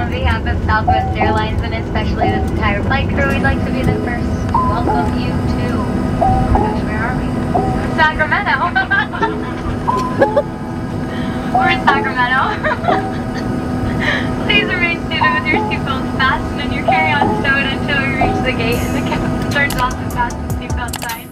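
Background pop song with singing, a steady run of short melodic notes under a sung vocal line.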